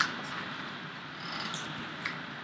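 A few computer keyboard keystrokes, a sharp click at the start and another about a second and a half in, over a steady hiss of background noise.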